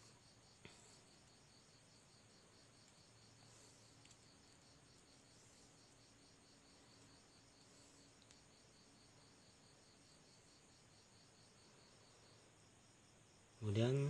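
Faint, steady chirping of crickets, an even run of high-pitched pulses, with a couple of soft clicks near the start.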